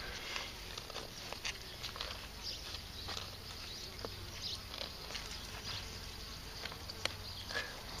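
Quiet background with a low steady hum and a few faint, sharp clicks scattered through it.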